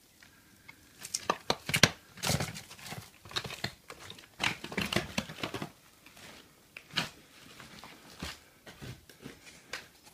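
Footsteps crunching and crackling over rubble and broken wooden boards, an irregular run of crunches that are busiest in the first half, with a single sharp crack about seven seconds in.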